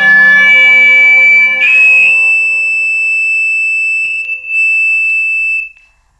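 Isolated electric lead guitar and Hammond organ tracks play a sustained chord. About one and a half seconds in, this gives way to a single high held note, which stops suddenly near the end as the track ends.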